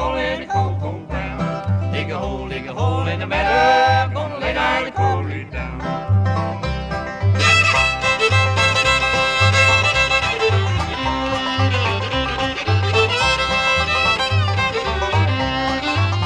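Live bluegrass band playing an instrumental passage: fiddle and five-string banjo over guitar, with an upright bass walking a steady alternating two-note line. About seven seconds in, the sound turns brighter, with held high notes.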